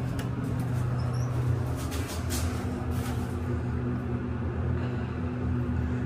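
Mitsubishi traction elevator cab after a floor call: a few light clicks as the doors close, over a steady low hum. A second steady drone sets in about two seconds in as the car gets under way.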